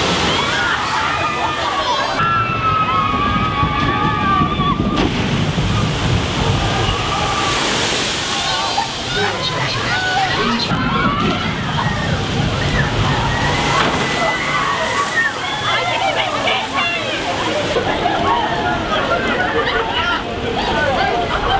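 Water sloshing and rushing through a spillwater (shoot-the-chute) ride's channel, stirred up by a boat's splashdown, with many people's voices over it.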